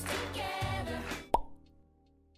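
Pop song with singing, cut off by a single sharp click a little over a second in, after which a faint tone fades away.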